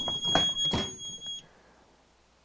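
A heat press's electronic beeper sounds one steady, high-pitched beep about a second and a half long, with some handling noise underneath.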